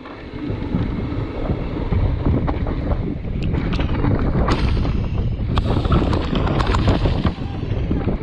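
Wind buffeting the microphone of a bar-mounted camera on a mountain bike speeding down a dirt trail, mixed with the tyres rolling over the dirt. From about three and a half seconds in, a series of sharp clicks and rattles from the bike over the rough ground.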